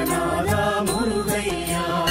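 Tamil Murugan devotional song music: a melody over regular percussion strikes.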